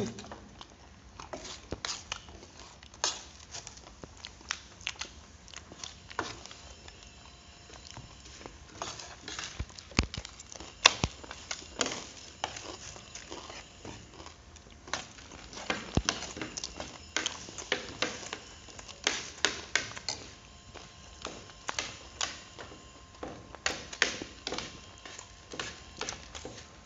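Metal spoons and forks tapping and scraping on plates during a meal: irregular sharp clicks, often several a second, some louder than others.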